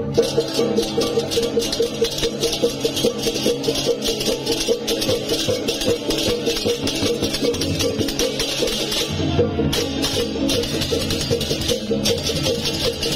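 Balinese processional gamelan (baleganjur) playing: fast, evenly repeated metallic notes with dense, continuous cymbal clashing over gong and drum, accompanying the carrying of a cremation tower.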